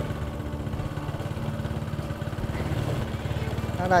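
Small motorbike engine running steadily while riding, a low even rumble.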